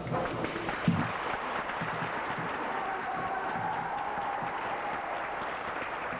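Audience applauding, with one sharp thump about a second in.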